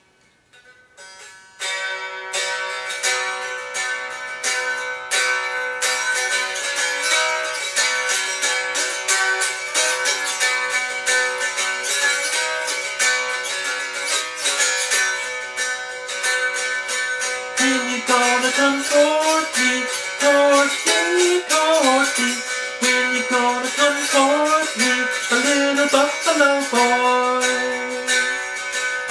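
A 1924 V.A. Lail mountain dulcimer played noter style: a plucked melody over steady drone strings, starting after a few faint plucks about a second and a half in. Its tone is thin, which the repairer puts down to the quarter-inch-thick top and back.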